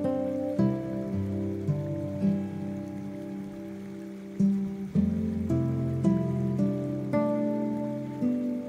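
Soft acoustic guitar picking single notes at a slow pace, each note ringing and fading, over a steady bed of rain sound.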